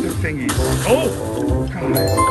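Video slot machine's game sounds: electronic reel music, broken about a second in by a gliding, wavering cartoon-character vocal effect as the reels stop on a small win.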